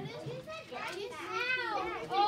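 Young children talking and calling out in a classroom, high-pitched voices overlapping, with one voice rising and falling loudest about a second in.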